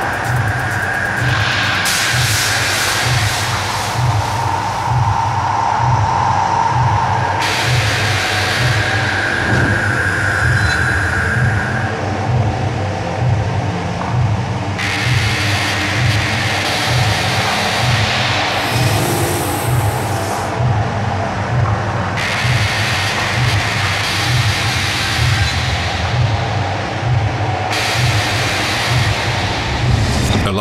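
Hard techno music: a steady, driving kick-drum beat over a rumbling bass line, with layers of high hissing noise that cut in and out every few seconds.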